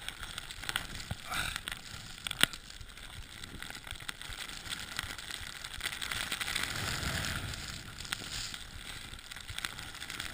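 Crackling rustle and wind noise on a ski action camera's microphone, with a sharp click about two and a half seconds in and a swell of low rumble around seven seconds.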